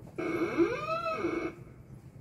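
An inserted sound effect: one pitched call a little over a second long that slides up in pitch and back down, starting and stopping abruptly.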